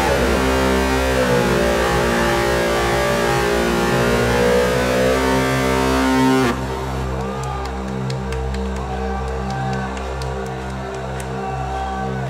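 Heavy metal band playing live: distorted guitars, drums and keyboard together, with held notes gliding over the top. About halfway through, the full band cuts out suddenly and quieter sustained chords carry on with light ticks above them.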